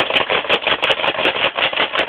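Loud, dense handling noise right at the phone's microphone: a hand rubbing, knocking and clattering close against it, in rapid clicks that start abruptly.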